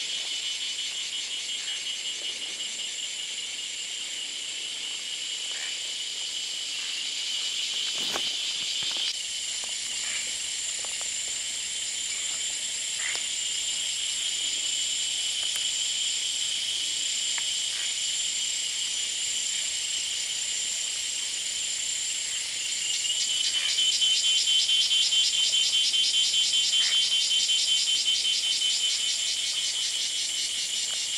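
A dense, steady chorus of forest insects shrilling high. About three-quarters of the way through, a louder, rapidly pulsing insect call joins in; a single sharp click comes about eight seconds in.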